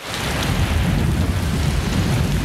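Steady heavy rain with a deep rumble underneath, starting suddenly at the very beginning.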